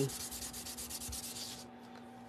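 Rapid back-and-forth rubbing of a hand-held tool over cardstock, stopping near the end. The strokes press a glued die-cut paper piece firmly down onto the card panel so it sticks.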